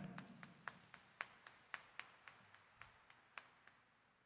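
Faint, scattered hand claps from a congregation: about a dozen separate sharp claps, thinning out.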